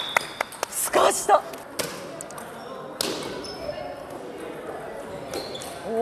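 A rubber soft volleyball being hit back and forth in a rally, heard as a handful of sharp, separate smacks spaced irregularly through the first three seconds, with a short shout in between and an "ooh" from an onlooker at the end.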